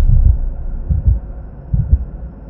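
Channel intro sound effect: deep bass thumps about once a second over a steady low hum, following a whoosh.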